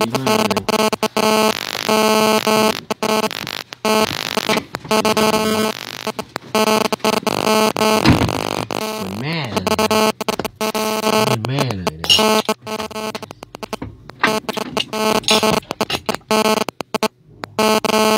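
A steady droning hum made of several held pitches, cutting out abruptly again and again, with a voice heard briefly in places.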